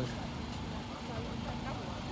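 Steady outdoor background noise: a low rumble with faint voices in the distance.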